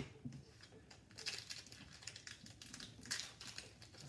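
Crinkling and tearing of a foil hockey card pack wrapper being opened by hand, in two short bursts of fine crackles: one about a second in, another near three seconds.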